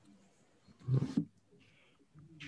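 A short, low vocal sound from a person, about half a second long and about a second in, between stretches of near silence.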